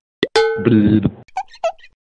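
Animated logo sting sound effects: a sharp click, then a pop with a brief ringing tone, a short pitched sound, and a few quick small blips that end abruptly.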